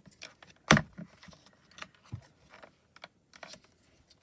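Light clicks and taps of card stock and tools being handled on a MISTI stamp-positioning platform, with one sharp louder knock about three-quarters of a second in.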